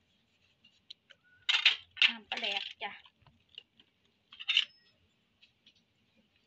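A knife slicing tomatoes over a clay mortar makes a few light clicks. About four and a half seconds in comes a single bright metallic clink with a brief ring.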